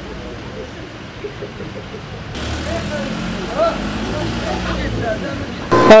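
Street traffic noise with faint, distant voices. From about two seconds in it gets louder, with a low engine rumble from vehicles passing close. A man's voice cuts in right at the end.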